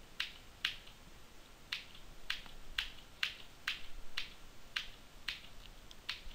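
Ten sharp clicks from working a computer's controls as the price chart is stepped forward, coming about two a second after a short gap near the start.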